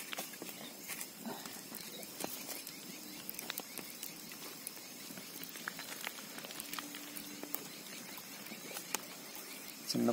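Faint scattered clicks and crackles of dry, charred cow-dung balls and the baked eggs inside them being handled on gravel.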